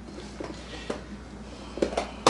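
Plastic food container being handled and its snap-on lid pried open: a few faint clicks, then a sharper plastic snap near the end as the lid comes free.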